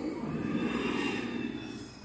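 Diesel engine of a New Flyer Xcelsior XD40 city bus passing close by and pulling away, with a high whine above the engine. The sound swells early and fades near the end as the bus moves off.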